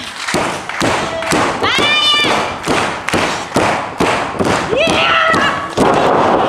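Repeated thuds and slaps of wrestlers' bodies and hands against each other and the ring mat, with high-pitched shouts, one held cry about two seconds in and another near five seconds.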